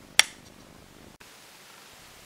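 A single sharp click as a hexacopter frame's folding arm is forced over its notch and snaps onto the small locking tube.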